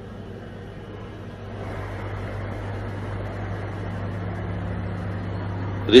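A steady low hum under an even rushing noise, which grows louder about a second and a half in.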